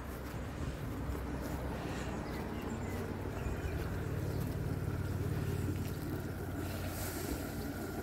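Above-ground pool's recirculation pump running with a steady low hum, a little louder in the middle, while its return jet churns the water.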